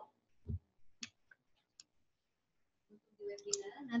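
A few faint, sharp clicks and a soft low thump during a pause in a quiet room, followed near the end by faint mouth and voice sounds as speech starts again.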